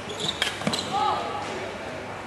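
Badminton rally: sharp racket strikes on the shuttlecock in the first second, then short gliding shoe squeaks on the court mat.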